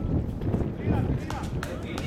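Distant voices of cricket players calling on the field, with a few faint sharp knocks about a second in, over a steady low rumble.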